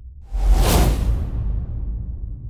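Cinematic whoosh sound effect with a deep bass hit for a logo reveal. It comes in suddenly about a third of a second in and fades over about a second, over a steady low rumble.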